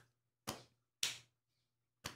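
Hand claps keeping time for a chant: three short, sharp claps about half a second apart, then a pause of about a second. They are palm claps against a partner's palms in the hula clapping pattern of cupped upoho claps and a flat pa'i.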